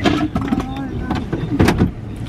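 A man's voice talking inside a car cabin, with a few sharp knocks or clicks, the loudest about one and a half seconds in.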